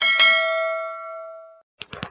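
Notification-bell chime sound effect of a subscribe-button animation: a single ding that rings out and fades away over about a second and a half.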